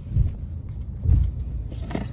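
Steady low rumble inside a car's cabin, with two soft thumps about a quarter second and a second in, and faint clicks from a stack of Pokémon trading cards being shuffled in hand.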